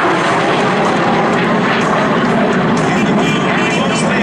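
Jet noise from an F-35C Lightning II and an F/A-18D Hornet flying past together, a loud, steady roar.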